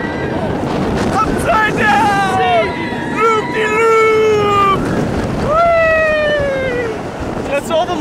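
Riders screaming on a looping steel roller coaster: several yells, two of them long and sliding down in pitch, over wind rushing across the microphone.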